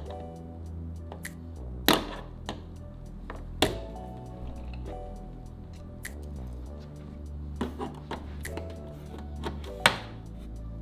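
Background music with a steady bass line, over a few sharp, irregular plastic clicks as push-pin clips are pried out of a car's bumper cover with a trim removal tool. The loudest clicks come about two seconds in and just before four seconds, with a quicker run near the end.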